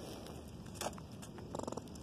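A rodent caught in a wire live trap gives a short, rapid buzzing chatter near the end, after a single click a little under a second in.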